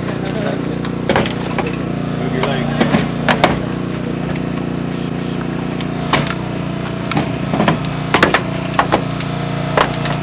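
Hydraulic rescue tool (jaws of life) working on a car door, with its engine-driven power unit running at a steady hum and a series of sharp cracks and pops as the door's metal and trim tear and give way, several in quick succession near the end.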